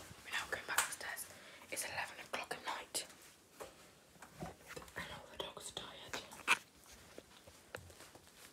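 A person whispering, breathy and unvoiced, with a few small clicks and knocks in between.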